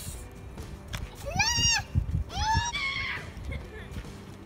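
A young child's high-pitched squeals, twice in quick succession, each rising then falling in pitch.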